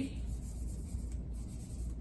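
A whiteboard eraser wiping marker writing off a whiteboard, a faint brushing rub.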